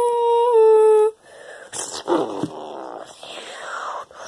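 A person's voice making monster cries for toy figures: a held, hummed note for about a second, then a raspy growl that falls in pitch.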